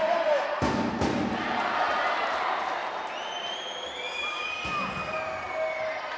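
Indoor volleyball rally: the ball is struck sharply a couple of times in the first second, over a crowd cheering and shouting in the arena. In the second half several short high squeaks slide in pitch, typical of sneakers on the court floor.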